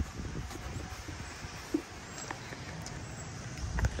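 Low outdoor background rumble with wind noise on the microphone, broken by a few faint short clicks.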